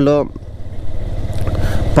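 Motorcycle engine running as the bike rolls along at low road speed and gently picks up pace, a low, even rumble that grows louder toward the end.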